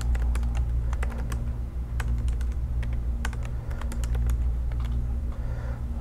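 Typing on a computer keyboard: an irregular run of key clicks as a short line of code is entered, over a steady low hum.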